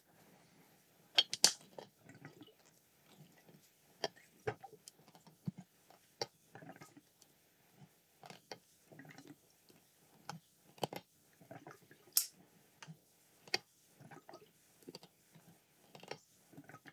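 Light, scattered clicks, taps and clinks of a plastic baster and glassware being handled at a one-gallon glass jug of wine must, with a few small liquid sounds between them.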